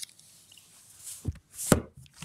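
A laptop lid being shut on a table: two short, dull knocks near the end, the second louder.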